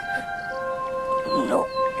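Soft background score of steady held notes, with a crying boy's tearful voice starting to say "no" near the end.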